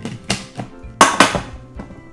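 Knocks and a clatter of a stainless steel pet-feeder bowl and the feeder's parts being handled and set down on a table, the loudest about a second in, over background music.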